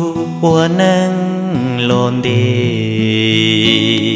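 Music from a sad Hmong ballad: a melody line slides up and down over a steady backing, then settles into a long held note after about two seconds.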